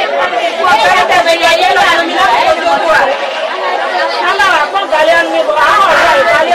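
Speech only: voices talking quickly with almost no pause.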